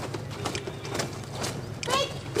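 Marching drill: cadets' boots striking the ground in step, short knocks about twice a second. A shouted drill command starts near the end.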